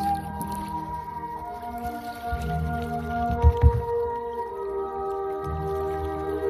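Background music: held instrumental notes that shift slowly from one to the next, with two low thumps in quick succession just past the middle.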